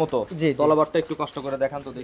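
Men talking in Bengali.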